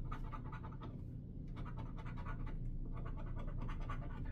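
A coin scratching the coating off a California Lottery "100X" scratch-off ticket in rapid, quiet back-and-forth strokes, with a short pause about a second in.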